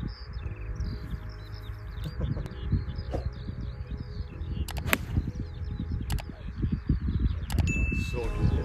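Wind rumbling on the microphone under steady birdsong on an open golf course, with a sharp crack about five seconds in as a club strikes a teed golf ball. A short bell-like ding sounds near the end.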